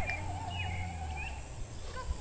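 Birds calling: one long wavering call through most of the first second and a half, with a few faint higher chirps, over a low steady hum.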